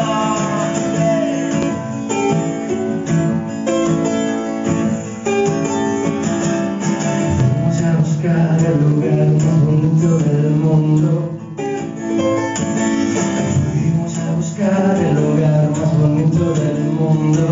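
Acoustic guitar strummed steadily in a live solo song, with a man singing over it at times, most clearly near the end.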